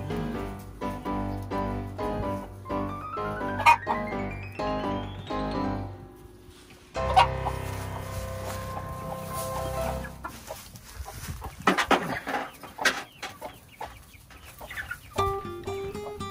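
Background music with a rising run of notes, over a mixed flock of chickens clucking. The music drops away briefly about six seconds in, and a few sharp, short sounds stand out about twelve seconds in.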